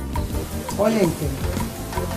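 A steady hiss under soft background music, with one short pitched sound that rises and then falls about a second in.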